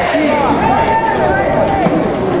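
Many young men's voices shouting long, drawn-out calls over one another: a baseball team's fielders calling out during infield fielding practice.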